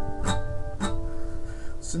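Acoustic guitar, just tuned to DADGAD, strummed twice about half a second apart, the chord ringing on and fading.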